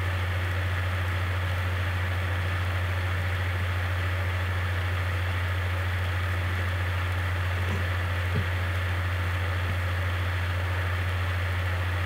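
Steady low hum over a constant hiss, unchanging throughout, with one soft click about eight seconds in.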